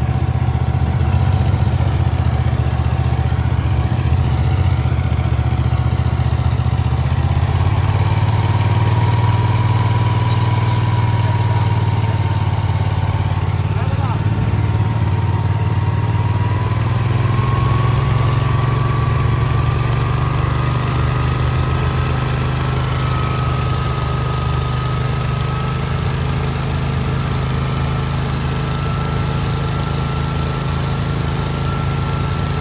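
Gas-engined stand-on leaf blower running at full throttle, its engine drone steady under a fan whine that climbs in pitch in steps as it moves along blowing leaves.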